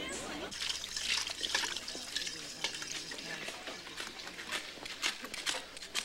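Liquid poured into a steel mixing bowl and stirred, amid repeated sharp clinks and clatter of kitchen utensils.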